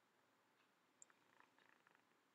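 Near silence: room tone, with a faint click about a second in and a little soft rustling after it as hands handle a felt pouch.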